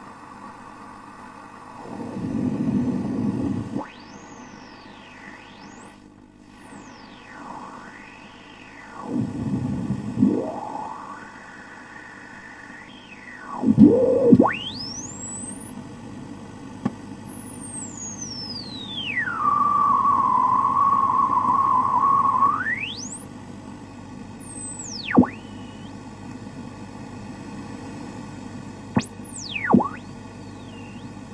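Radio frequency interference: a static hiss with whistling tones that glide steeply up and down in pitch. One tone levels off and holds steady for about three seconds past the middle, then sweeps away.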